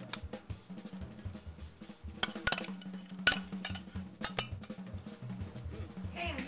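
A metal spoon clinking and scraping against a stainless saucepan and a glass dish as thick cranberry sauce is spooned out, a few sharp clinks with the loudest a little past the middle, over soft background music.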